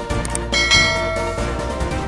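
Background music with two quick clicks, then a bright bell ding about two-thirds of a second in that rings out and fades within a second: a notification-bell sound effect in a subscribe animation.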